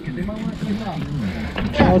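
Men's voices talking on a boat, the words unclear, getting louder near the end, over a low steady rumble.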